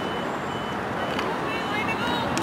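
Faint repeated high beeping of a construction machine's reversing alarm over a steady outdoor hiss, with distant voices.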